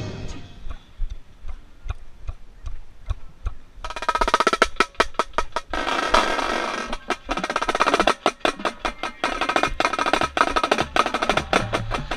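Marching snare drum played with a drumline. There are soft, sparse strokes for the first few seconds, then loud, rapid rhythmic strokes from about four seconds in.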